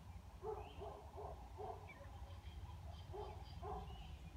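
A series of short, hoot-like animal calls: several in quick succession in the first two seconds and two more a little after three seconds, over a low, steady rumble. Faint, high bird chirps come in near the end.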